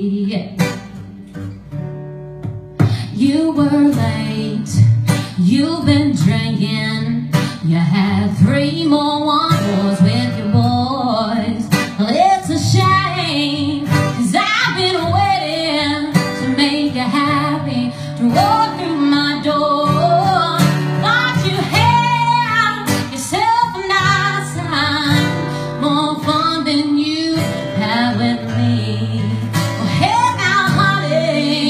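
A woman singing a country song live, accompanied by strummed guitar. Her voice drops out for a couple of seconds near the start, leaving the guitar alone, then the singing resumes.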